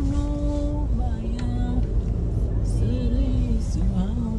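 Steady low road and engine rumble heard inside a moving small Honda car. Over it, a voice holds a few long sung notes.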